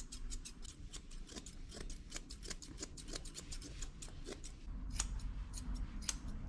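Grooming scissors snipping quickly through dog fur around a paw, several snips a second.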